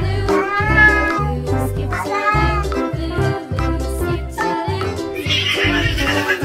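Background music with a steady pulsing beat, with a cat meowing twice over it.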